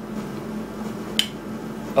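Hand-lever potato chip cutter being pressed down on a potato, giving one sharp click about a second in. A steady low hum runs underneath.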